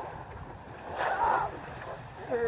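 Wind buffeting the microphone and waves washing around a catamaran in rough water, swelling to a louder rush about a second in.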